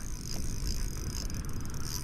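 Spinning reel's drag buzzing as a hooked fish runs hard and strips line against it, over a low rumble of wind and water on the microphone.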